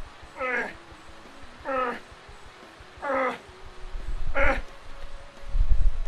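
A man's strained grunts of effort, one with each landmine-press rep: four short groans falling in pitch, about a second and a half apart. A low, heavy thud follows near the end.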